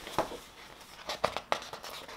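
Pages of a large paper booklet being turned: a few short, crisp rustles and flaps of paper, with a small cluster a little over a second in.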